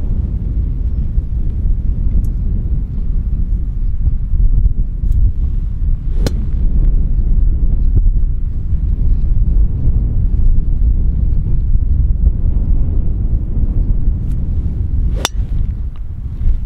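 Wind buffeting the microphone in a steady low rumble. Near the end comes one sharp crack: a driver striking a golf ball off the tee. A much fainter click comes about six seconds in.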